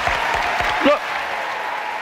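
Studio audience applauding, an even wash of clapping, with a man's single word heard through it about a second in.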